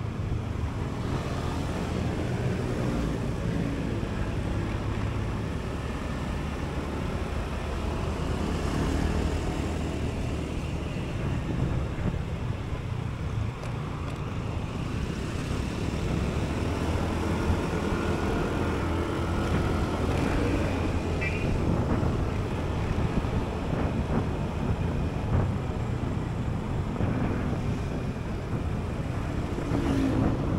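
Honda Beat scooter's single-cylinder engine running steadily at cruising speed, heard from the rider's seat along with road and traffic noise.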